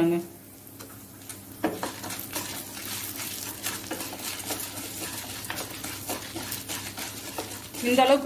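Wooden spatula stirring and scraping lentils, dried red chillies and tamarind as they fry in a nonstick pan, with irregular scraping and light rattling. The stirring grows busier from about a second and a half in.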